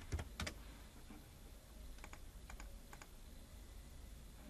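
Faint typing on a computer keyboard: a quick run of keystrokes near the start, then a few single clicks about two to three seconds in.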